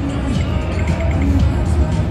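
Casino-floor sound: background music with scattered short electronic chimes and tones from video poker and slot machines.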